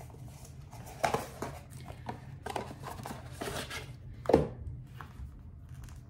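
Paperboard retail box and its inner tray being handled: scattered light rustles, taps and scrapes of cardboard, with one louder scrape about four seconds in.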